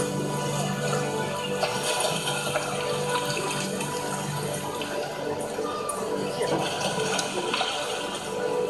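Fountain-show music of long held notes and chords, over the steady hiss of water jets and spray.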